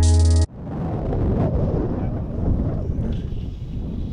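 Electronic background music with a heavy beat cuts off abruptly half a second in, and then wind buffets the microphone of a camera held out of a moving car's open window, a dense, rumbling rush mixed with road noise.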